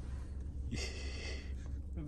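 A short, sharp breathy gasp from a person, lasting about two-thirds of a second just before the middle, over a steady low hum.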